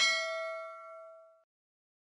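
A bell 'ding' sound effect for clicking a notification-bell icon: one struck ringing note with several overtones that fades away over about a second and a half.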